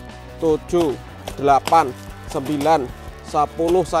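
A man's voice counting aloud from seven to ten over steady background music.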